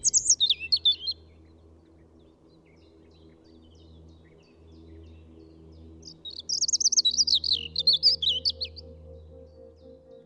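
Songbird singing: a quick high warbling phrase right at the start and a longer rapid run of chirps about six seconds in, over a faint low steady drone.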